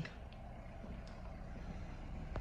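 Faint, steady low rumble of background noise with a few light clicks.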